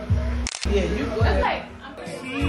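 Voices over background music with a low beat, broken by one sharp click about half a second in.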